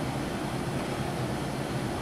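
Steady background hum and hiss, like a fan or air-conditioning unit running in a small room.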